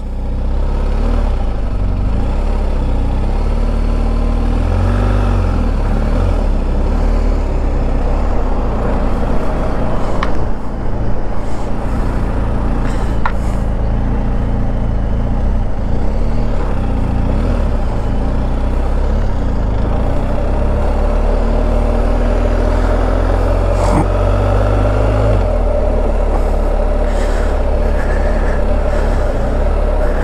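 BMW R1250 GS Rallye's boxer-twin engine under way at low town speed, a steady rumble whose note steps up and down as the bike speeds up and slows.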